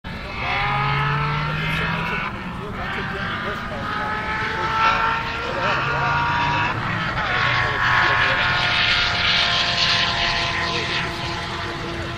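High-performance car accelerating hard at full throttle, its engine note climbing in pitch through the gears, with upshifts about two seconds in and about seven seconds in, then fading as the car pulls away.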